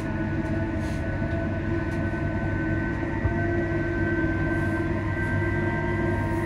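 Inside a ScotRail Class 334 Juniper electric multiple unit under way: a steady rumble from the running gear with a constant whine of several steady tones over it.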